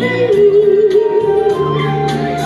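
A woman singing a Mandarin song into a microphone over an instrumental accompaniment with bass and a steady beat. She holds one long wavering note through the first half, then moves on to lower notes.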